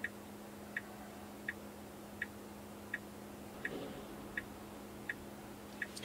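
Tesla turn-signal indicator ticking evenly, about one tick every three-quarters of a second, while signalling a left turn, over a low steady cabin hum.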